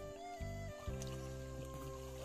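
Background music of held, steady chords that shift a few times in the first second.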